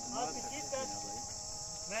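A steady high-pitched chorus of chirring insects, with a man's voice briefly in the first second.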